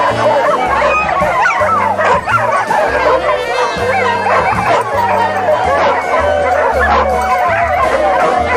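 Many greyhounds yipping, barking and whining over one another without a break, over background music with a stepping bass line.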